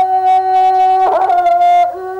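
Music: a wind instrument playing a slow melody of long held notes, with quick ornamented turns in pitch about a second in and again near the end.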